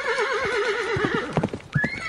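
A horse's whinny: one high, wavering call about a second long that trails off, followed by a few short clicks.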